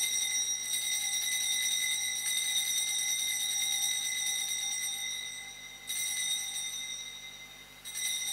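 Altar bells rung at the elevation of the consecrated host: a sustained, rapidly trilling ring that fades out, then is rung again about six seconds in and once more at the very end.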